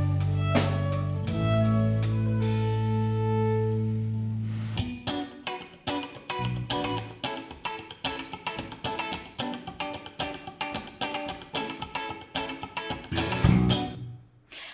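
A Celtic fusion band's track: held chords over a steady bass for about five seconds, then a fast, even guitar riff with drums comes in. The riff is the one the band added between a slow tune and a fast one.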